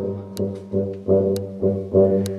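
Brass quintet playing a run of short, re-struck chords over a low tuba bass line, about two a second, with three sharp clicks across them.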